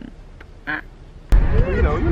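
A quiet car cabin with one short vocal sound, then an abrupt cut to loud low car road rumble under lively voices.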